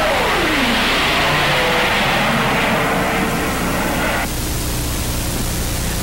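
Jet aircraft in flight: a loud rush of engine noise with a whine that falls in pitch during the first second. A little over four seconds in it drops to a quieter, steadier hiss and hum.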